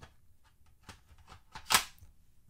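Safariland QLS quick-release fork snapping into its receiver plate: a few light plastic taps as it is lined up, then one sharp click near the end as the latch locks.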